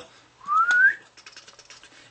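A short rising whistle about half a second in, one quick upward glide with a small click in the middle. Faint light ticks and rustling follow while a silk scarf is drawn out of the clear plastic magic tube.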